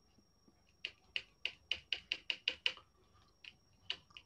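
A quick run of about ten light computer-keyboard keystrokes over two seconds, then two more near the end, faint through a laptop microphone.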